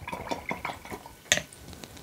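A watercolour brush being rinsed in a jar of water: swishing with small clinks against the jar, and one sharper clink about a second and a half in.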